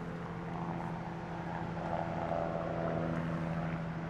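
A steady machine hum with several held tones underneath. A higher tone swells and then fades in the middle.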